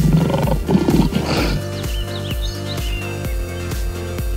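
Background music with a steady, repeating bass beat. A rough animal roar is laid over it in the first second and a half, and a few short bird chirps follow.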